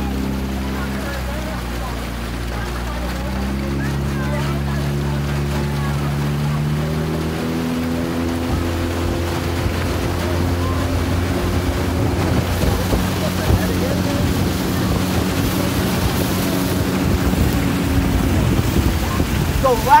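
Outboard motor of an aluminium coaching launch running under way, its pitch stepping up and down a few times as the throttle changes, over wind and water noise.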